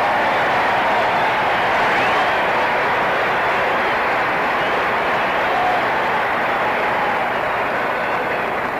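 Large arena crowd applauding and cheering in a steady, unbroken wash of noise, heard through a dull 1940s fight-film soundtrack.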